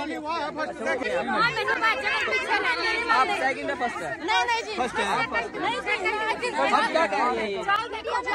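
Several women talking loudly over one another at once, an overlapping crowd of voices arguing over who won the race.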